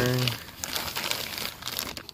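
Plastic bag and foam packing wrap crinkling and rustling in irregular bursts of small crackles as hands dig through and unwrap new parts in a cardboard box.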